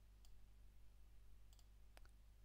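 Near silence with a low steady hum, broken by a few faint computer mouse clicks; the last and clearest comes near the end.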